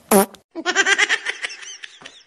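A short comic sound effect with a quickly falling pitch, followed by rapid, high-pitched giggling laughter that fades toward the end.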